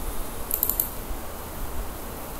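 A short cluster of faint computer mouse clicks about half a second in, over a low steady background hum.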